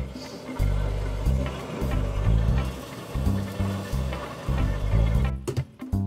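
Handheld kitchen blowtorch hissing steadily as its flame caramelizes barbecue sauce on ribs; the hiss stops near the end. Background music with a steady bass line plays underneath.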